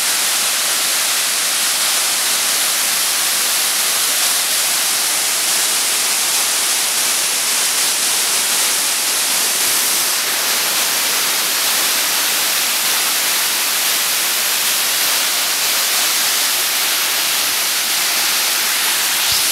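Water pouring down the stepped stone face of a dam spillway: a loud, steady rushing hiss that does not change.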